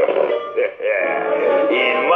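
A man's laugh over cartoon background music.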